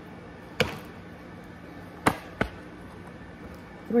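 Three sharp knocks of a tarot deck against a tabletop: one just after the start, then two close together about two seconds in, over a faint steady hum.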